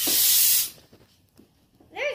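A steady high hiss that cuts off suddenly under a second in, followed by near quiet.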